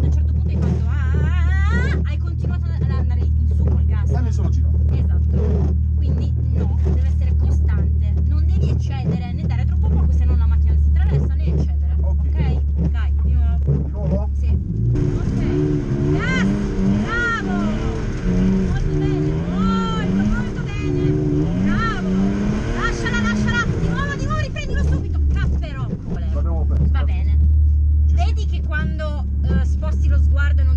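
Drift car engine heard from inside its stripped cabin: idling steadily, then from about halfway revving up and down repeatedly for about ten seconds as the car is driven, before settling back to idle near the end.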